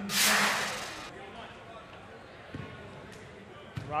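A sudden rush of noise, loudest at once and fading out over about a second: a broadcast transition swoosh as the replay cuts back to live play. After it, quiet gym background with a couple of faint knocks.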